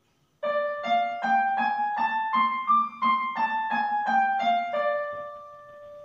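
Electronic keyboard on a piano voice playing a one-octave scale on D with the right hand: single notes stepping up evenly to the top D and back down, the last low D held to the end.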